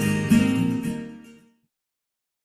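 Intro music of strummed guitar, a last strum ringing out about a third of a second in and fading to nothing by about a second and a half in, followed by silence.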